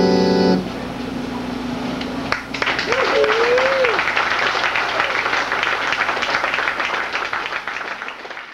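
Sustained organ chord cutting off about half a second in, with a lower held note lingering for another couple of seconds. Then audience applause with a single wavering whoop, fading near the end.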